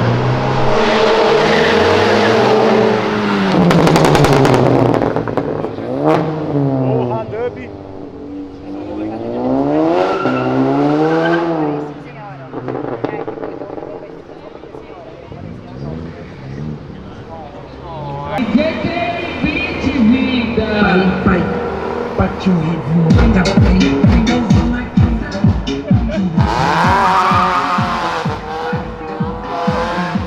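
Several cars' engines revving hard as they pull away one after another, their pitch climbing and dropping with each run. In the last several seconds there is a low, rapid beating.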